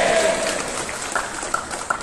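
Crowd applauding, with a few separate claps standing out in the second half.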